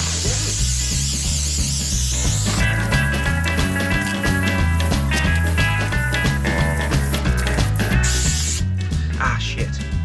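Background music with a steady beat, over which an aerosol can of spray adhesive hisses for the first two and a half seconds and again briefly about eight seconds in.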